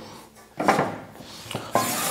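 Parts of the combination saw's blade housing being handled. There is a knock about half a second in, then a second knock and a sustained scraping, sliding sound.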